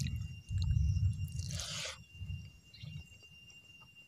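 A person chewing a mouthful of rice with wet, squishy sounds, loudest in the first two seconds and fading after. A short breathy noise comes about a second and a half in, over a faint steady high tone.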